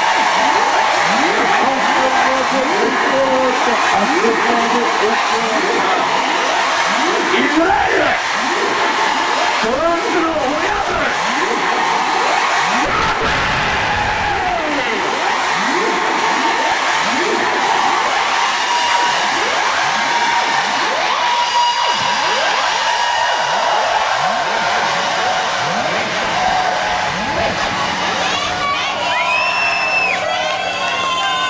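Psytrance live set in a breakdown: a loud, steady wash of noise laced with many sliding, falling tones, with no steady beat.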